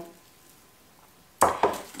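A glass bowl knocked down on a stone countertop about one and a half seconds in, followed by a few small clinks, after near silence.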